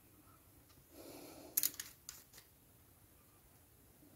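Small hobby tools being handled on a cutting mat: a brief soft rustle about a second in, then one loud sharp click and a few lighter clicks over the next second.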